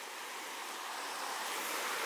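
Steady rush of a small river flowing through shallow rapids over rocks, growing a little louder toward the end.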